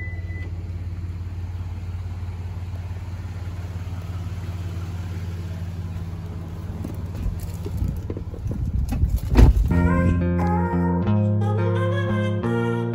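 A car engine idling steadily, with a short beep at the start. A few knocks build to a loud thump of a car door shutting about nine seconds in, and then acoustic guitar music comes in.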